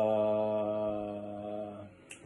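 A man's voice sings one long held note on the syllable "ta" as the last note of a rhythm-reading exercise. The note stays steady in pitch and fades away shortly before the end.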